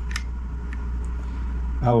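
A short click as a thumb presses the mute button on a headset microphone's beltpack, followed by a fainter second click, over a steady low hum.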